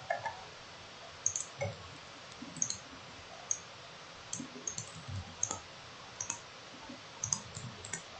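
Computer mouse clicking: about a dozen short, sharp clicks at irregular intervals, some in quick pairs, over faint room hiss.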